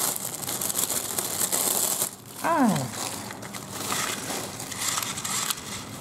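Clear plastic bag crinkling and rustling as a hand-squeeze toy fan is unwrapped from it, with irregular crackles throughout.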